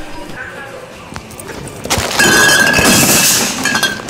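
A sudden, very loud burst of noise with a steady ringing tone through it. It starts about two seconds in, holds for about a second and a half, then fades.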